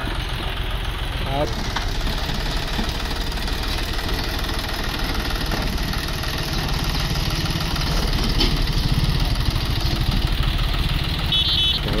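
John Deere 5050E tractor's three-cylinder diesel engine running steadily, a little louder from about eight seconds in.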